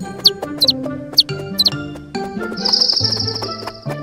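Cartoon bird sound effects over light background music: four quick high falling chirps in the first two seconds, then one long high warbling trill in the second half.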